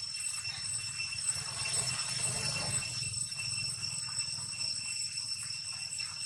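Insects droning steadily in several high unbroken tones over a low steady rumble.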